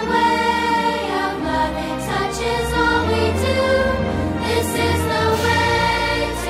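Song with a choir singing held notes over a bass accompaniment.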